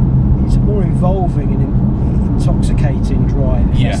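Engine and road noise heard inside a BMW M car's cabin while it is driven along at a steady pace: a constant low drone with no revving.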